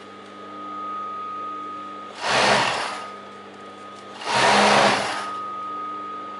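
Industrial overlock (serger) machine stitching in two short bursts, each under a second, over the steady hum of its running motor, as it sews elastic onto a trouser waistband.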